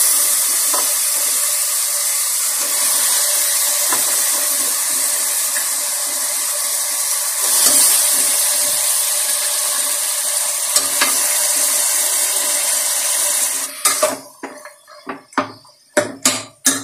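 Raw mutton pieces sizzling and frying in hot onion-tomato masala in an open pressure cooker, a steady hiss with a few faint clicks of the ladle. Near the end the hiss stops abruptly and a steel ladle knocks against the pot several times.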